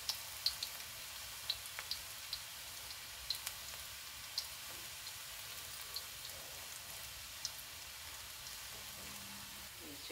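Chopped garlic frying in desi ghee in a kadhai for a dal tadka: a quiet, steady sizzle with scattered small pops that thin out in the second half as the garlic turns golden brown.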